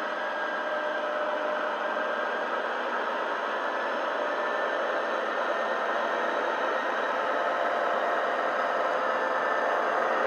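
Model HST power car's ESU LokSound decoder playing South West Digital's Paxman Valenta diesel engine sound through its small onboard speaker: a steady engine note, growing slowly louder as the train approaches.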